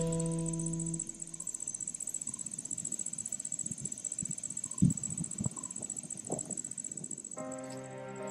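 Insects trilling steadily and high-pitched in the undergrowth, with a few dull knocks and rustles about halfway through. A sustained music chord fades out in the first second and another comes in near the end.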